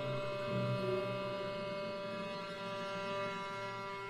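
Orchestra in a quiet passage, holding a sustained chord of steady tones that slowly fades.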